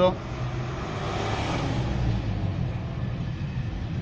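Background road traffic: a vehicle's noise swells and fades about one to two seconds in, over a steady low hum.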